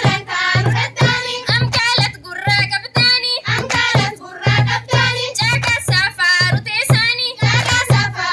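A group of schoolgirls singing together through a microphone, their voices wavering, with a hand drum keeping a steady beat under the song.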